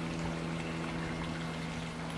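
Pool pump running: a steady low hum with a faint wash of water.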